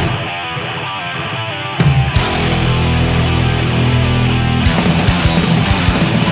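Crossover thrash hardcore recording with distorted electric guitars. The opening stretch is thinner and quieter, with the highs cut off. About two seconds in, the full band comes in loud, and the drumming grows busier near the end.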